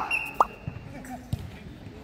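A few short, sharp knocks of a foot volleyball (jokgu) ball being kicked on an outdoor dirt court. The loudest, about half a second in, comes with a quick squeak-like chirp, and the others are spaced about a second apart.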